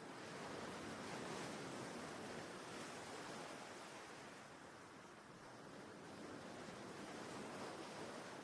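Faint, steady noise of wind and water, swelling slightly and easing near the middle.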